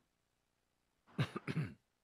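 A man clearing his throat once, a short voiced sound about a second in, after a second of near silence.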